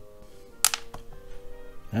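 A single sharp click as a small plastic miniature head drops onto the desk, over soft background music.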